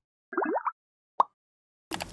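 Cartoonish sound effects on a channel logo card: a quick cluster of rising pitch glides lasting under half a second, then a single short pop a little over a second in.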